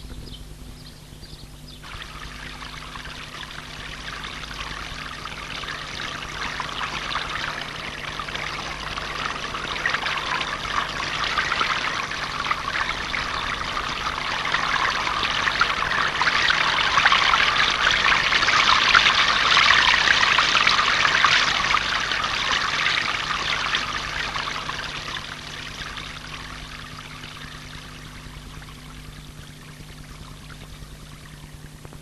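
Water running and splashing in a stone channel, swelling gradually to its loudest past the middle and then fading away, over a faint steady low hum.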